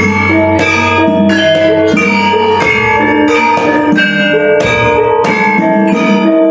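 Javanese gamelan ensemble playing: keyed bronze metallophones such as the saron struck in a steady melody, each note ringing on, with a kendang drum. A deep sustained low tone sounds under the first half and fades out at about two and a half seconds in.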